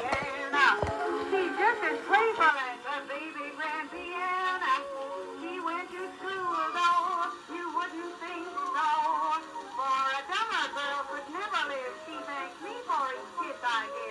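A 1921 acoustic-era recording of a popular song, a singer's wavering, vibrato-laden voice over a small band, thin and with no bass, played back through a device speaker into a small room.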